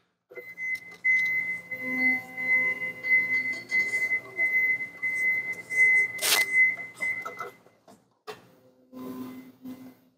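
Nissan 36-volt electric forklift driving, its drive motor giving a steady high whine over a low hum. There is a sharp clunk about six seconds in, and the whine stops near eight seconds.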